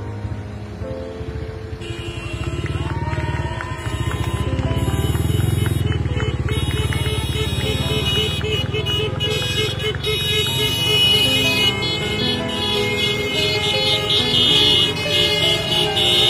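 Road traffic of motorcycles and cars passing close by, engines running and revving, with several vehicle horns sounding on and off over the engine noise.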